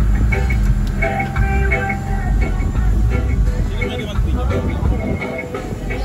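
Loud, steady low rumble of a speedboat's engine and the wind of its run, with background music and voices over it.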